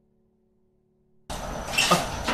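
Near silence with a faint low hum for about a second, then a steady background noise cuts in suddenly.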